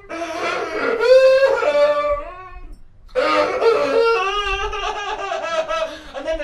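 A man wailing and screaming in mock anguish into a microphone: two long drawn-out cries, the second starting about three seconds in after a brief pause.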